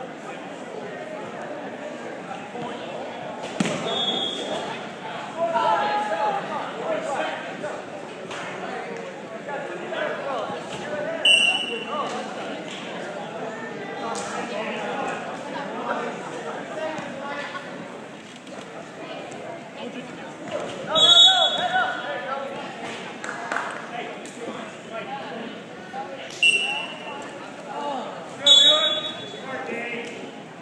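Indistinct voices and calls echoing in a large gym, with occasional thuds of wrestlers hitting the mat and a few short high-pitched squeaks.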